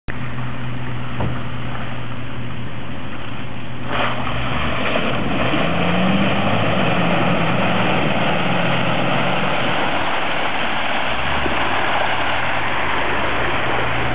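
A steady rush of muddy water running down a 4WD track, growing louder about four seconds in, over a four-wheel drive's engine. The engine note rises and wavers for a few seconds midway as the 4WD drives through the mud.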